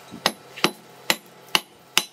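Hand hammer striking a red-hot steel blade on an anvil during hot forging: evenly spaced blows, about two a second, five in all.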